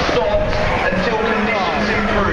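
Football crowd in the stands, many voices talking and calling over one another, with a low rumble of noise underneath.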